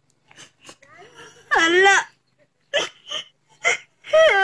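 A girl crying: faint breathy sniffs, then a high, wavering wail about a second and a half in, followed by three short sobs.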